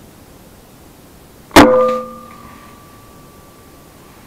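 A Mankung crossbow firing: one loud, sharp crack about one and a half seconds in, followed by a ringing tone that fades away over the next two seconds.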